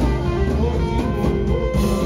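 Church worship band music, with strummed guitar over bass and drums, playing steadily.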